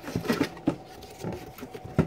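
Light handling noises: a few soft, irregular knocks and clicks as a plastic measuring cup is picked up from the counter.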